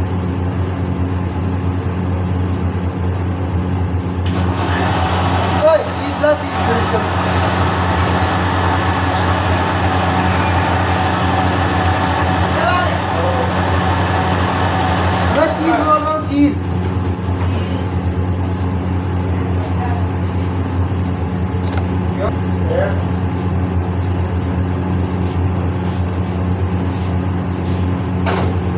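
Busy roadside ambience: a steady low hum with background voices and traffic noise. A louder wash of noise and voices runs from about four seconds in until about sixteen seconds in, with a few sharp ticks.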